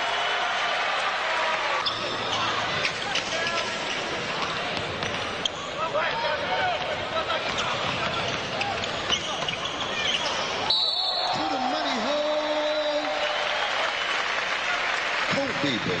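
Basketball bouncing on a hardwood court over steady arena crowd noise, with voices in the background.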